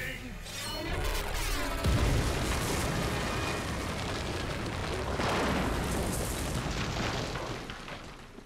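Cartoon sound effects of a monster breaking out of rock: a deep boom about two seconds in, then a long rumbling crash of shattering stone that swells again midway and fades near the end. A monster's roar runs through it.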